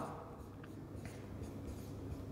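Marker pen writing on a whiteboard: a few short, faint strokes and scratches as letters are drawn.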